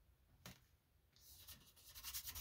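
Faint rubbing of fingertips pressing and smoothing a paper butterfly cutout onto a glued collage card, starting about a second in, after a single light tap.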